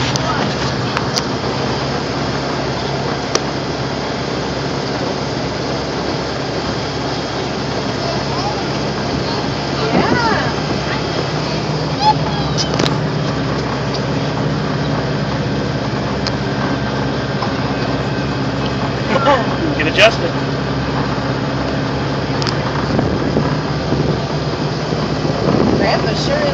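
Engine of the vehicle towing the ride running steadily at a low, even pitch, heard from inside the towed cabin as it rolls along, with brief voices now and then.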